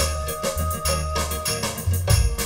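Live band music with no singing: keyboard notes held long over a steady bass, with drum beats from an octapad electronic drum pad.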